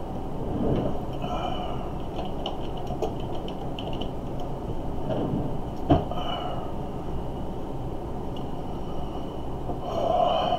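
Steady low background rumble, with one sharp click about six seconds in.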